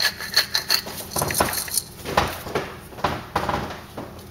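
Cracked black pepper being dispensed from a small container over raw chicken, heard as a quick run of rhythmic clicks that stops about a second in. Scattered knocks and rubbing of kitchen items being handled follow.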